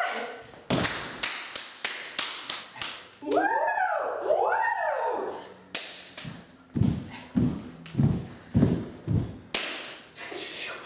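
A run of sharp taps, then evenly spaced taps with low thuds about twice a second, with a rising-and-falling pitched sound, like a voice, in the middle.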